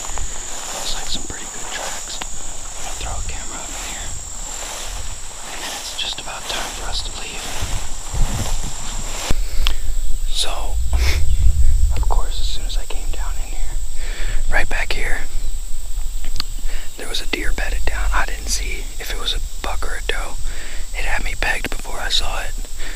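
Two people whispering, soft speech that the recogniser did not catch. A steady high-pitched drone runs under the first half and cuts off abruptly about nine seconds in; after that a low rumble on the microphone sits under louder whispering.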